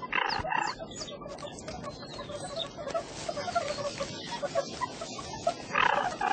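A group of banded mongooses chattering with many short high calls, one louder squeal just after the start.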